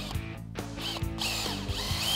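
Cordless drill driving a screw through a 2x6 screed rail into a wooden stake: the motor whine starts about half a second in and rises in pitch as it spins up.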